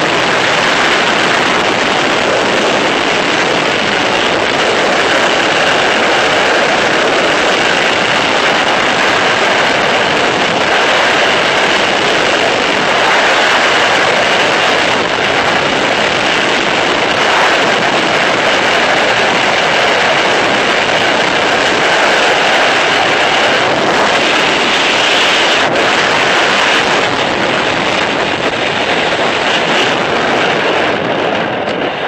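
Loud, steady rush of freefall wind blasting across the camera's microphone during a skydive.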